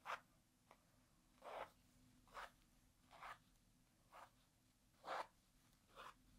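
Basting thread being pulled out of quilted fabric layers: a short rasp six times, about once a second.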